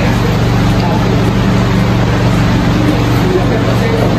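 A loud, steady low mechanical drone with a constant hum, like a motor running without change.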